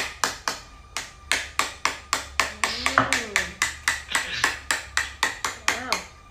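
A fast, even run of sharp taps, about four to five a second, stopping abruptly, with a short voice sound partway through.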